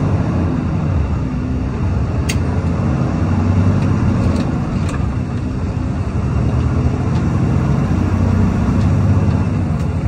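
Semi-truck's diesel engine and road noise heard inside the cab while driving, a steady low drone. A single sharp click sounds about two seconds in.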